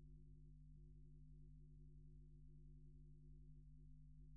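Near silence: only a faint, steady low hum.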